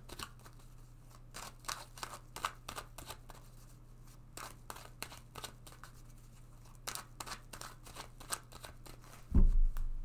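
Tarot cards being shuffled and handled in the hands: a run of soft, irregular clicks of card edges. A loud low thump comes near the end.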